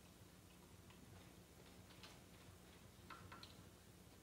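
Near silence, broken by faint, scattered ticks and squeaks of a marker writing on a whiteboard, over a low steady hum.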